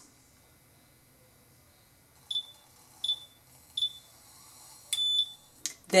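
Cloud Nine 'O' electric roller heating pod beeping: three short high beeps about 0.7 s apart, then one longer beep at the same pitch, the signal that the roller inside is heated and ready. A light click follows near the end.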